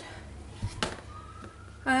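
Faint siren in the distance, its pitch slowly gliding, with a single sharp tap a little under a second in.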